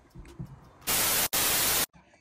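A burst of loud white-noise static, about a second long with a split-second break in the middle, cutting in and out abruptly: a TV-static transition sound effect.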